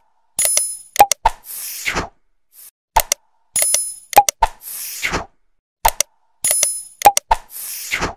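Animated subscribe-button sound effects: a click, a bright ringing ding, two quick clicks and a short whoosh, the sequence repeated three times about every three seconds.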